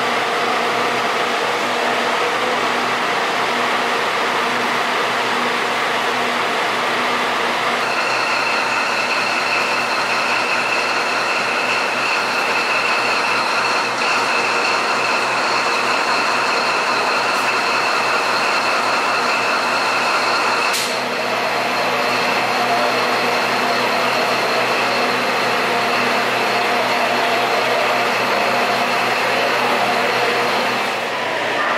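Diesel train locomotives running at idle, a steady machine hum with a high-pitched whine that starts about a quarter of the way in and shifts about two-thirds of the way through.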